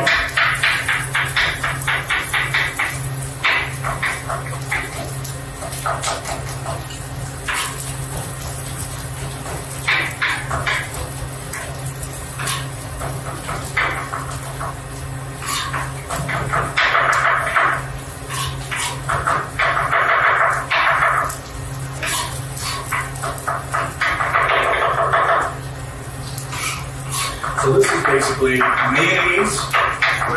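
Chef's knife mincing garlic on a cutting board: runs of quick chopping strokes in several bursts, with pauses between them.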